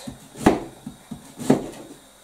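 A kitchen knife thinly slicing cabbage, the blade knocking on the cutting surface: two sharp chops about a second apart with lighter cuts between.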